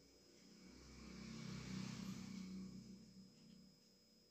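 A vehicle passing by: a faint low engine hum with a rushing sound that builds to a peak about two seconds in, then fades away.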